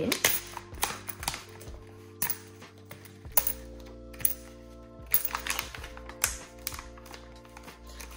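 Soft background music with a run of sharp clicks and taps: four pound coins being handled and put into a cash envelope.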